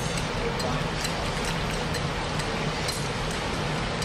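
Wire whisk stirring strawberry syrup in a glass saucepan, its wires giving light, irregular ticks against the glass, over a steady background noise with a low hum.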